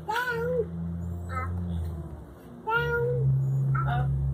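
Saucer swing squeaking at its hangers as it swings back and forth, a pitched squeak that rises and falls, about every second and a half, over a steady low hum.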